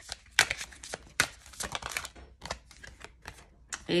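A deck of tarot cards shuffled by hand: a quick, irregular run of crisp card slaps and clicks, several a second.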